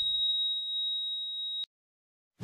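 Heart monitor flatline: one steady high-pitched electronic tone, held for about a second and a half and then cut off suddenly, signalling that the patient has died.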